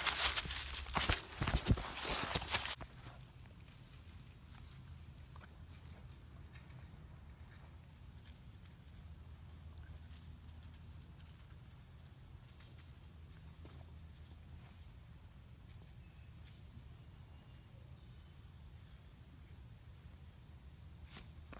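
Footsteps crunching and rustling through dry fallen leaves, loud and close for the first two or three seconds, then stopping. After that, only a faint low hum with a few faint distant rustles and clicks.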